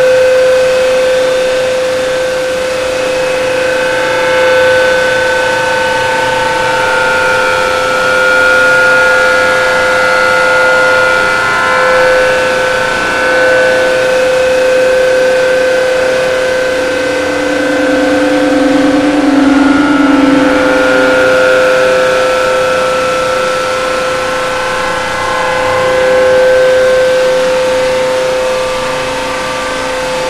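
Loud, continuous drone of overlapping held tones: one steady note sounds throughout while higher notes come and go, and a lower note joins for a few seconds just past the middle.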